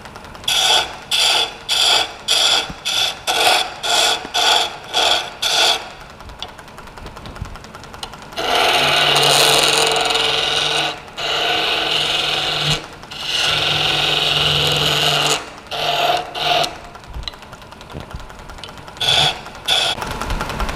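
Wood lathe with a hand-held turning tool cutting into the spinning wood, cutting ring grooves into the blank. The tool bites in short cuts about twice a second at first, then in three longer continuous cuts of two to three seconds each, then a few short cuts near the end. The lathe runs quietly between cuts.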